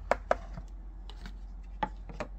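Sharp knocks and taps of a cardboard trading card box and its lid being handled on a table: two close together just after the start and one more near the end.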